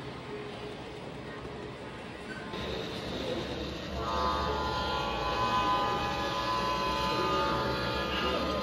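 Sound unit of a G scale model diesel locomotive: a low engine rumble comes up, then about halfway through a long, steady multi-note horn blast sounds.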